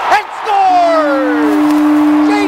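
Arena goal horn blowing one steady low tone from just under a second in, over a cheering crowd, sounding for a home-team goal.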